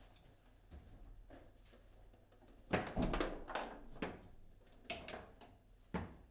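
Table football being played: sharp knocks of the ball struck by the player figures and hitting the table walls. A quick run of hits comes about three seconds in, followed by single knocks about a second apart.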